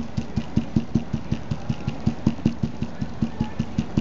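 Stencil brush pounced up and down on a stencil laid over felt: quick, even dabbing taps, about five a second.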